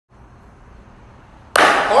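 Faint room tone, then about a second and a half in a single sharp hand clap, loud and sudden, with a man's voice starting right after it.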